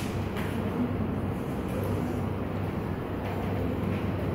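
Steady room noise: a constant low hum with an even background rumble and no distinct events.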